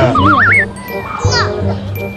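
A toddler's voice, a short high squeal at the start and brief babbling later, over background music, with a short wavering whistle-like tone in the first half second.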